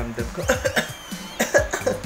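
A man coughing in two short bouts, about half a second in and again about a second later, a put-on cough of someone calling in sick. Background music plays underneath.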